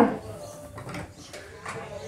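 A lull between talk and keyboard playing: low room noise with a few faint, short knocks and no notes played.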